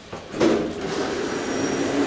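Elevator car's automatic sliding doors running along their track, starting abruptly about half a second in and then rumbling steadily.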